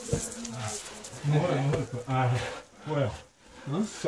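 Short bursts of a man's voice, about four of them with pauses between, unclear words or effortful vocal sounds.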